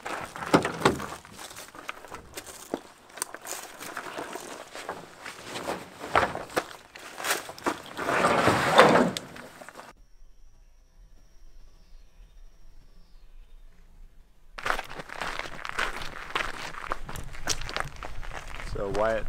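Handling and footstep noise: a busy run of clicks, knocks and rustling as gear is taken from a pickup's tailgate, loudest a little before halfway. This is followed by a few seconds of faint outdoor ambience with a low hum, and then more rustling and footsteps from the last few seconds on.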